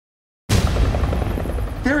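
A loud, low rumbling noise cuts in abruptly out of silence about half a second in; a man's voice starts right at the end.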